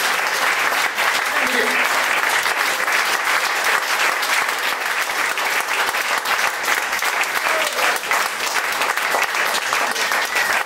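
Audience applauding steadily, a dense clapping with no pause.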